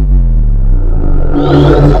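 Synthesized logo-intro sound: a loud, deep bass tone whose overtones slide downward, with a brighter swell joining about one and a half seconds in.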